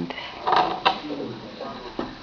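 Handling noise from crochet work: a short rustle, then a single sharp click as the metal crochet hook is set down on the table.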